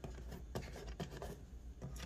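Faint rubbing and a few soft taps of fingers handling the front panel of a vibration sensor calibrator, around its rubber-ringed shaker mount.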